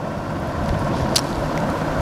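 Steady low background rumble during a pause in speech, with a brief faint click about a second in.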